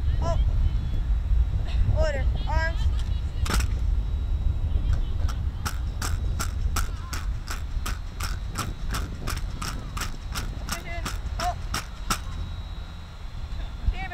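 Sharp clicks in an even beat, about three a second, running for several seconds in the middle, over wind rumbling on the microphone. A few short chirp-like pitched calls come in the first few seconds.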